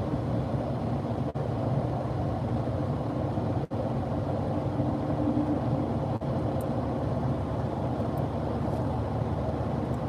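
Steady road and tyre noise with engine hum inside a car cruising at motorway speed. The sound drops out for an instant three times.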